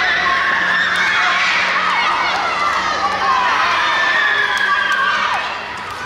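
A group of children shouting and cheering at once, many high voices overlapping, easing off a little near the end.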